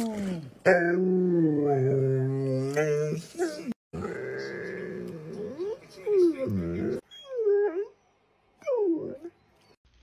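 Golden retriever howling and vocalising in long, wavering, drawn-out calls for the first seven seconds, then two short falling whines about seven and nine seconds in.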